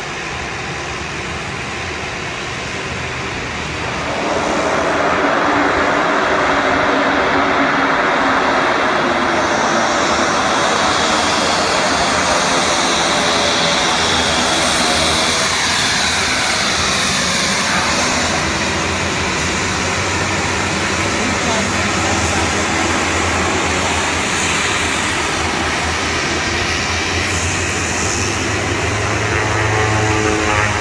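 Twin-turboprop Dornier 228 landing and taxiing past close by: its engine and propeller drone grows loud about four seconds in, with a falling whine as it passes near the middle.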